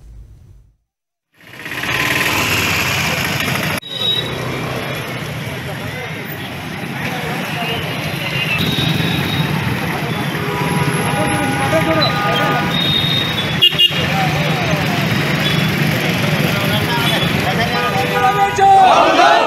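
Busy street noise: motor traffic with vehicle horns honking, mixed with a crowd's indistinct voices. It starts after about a second of near silence.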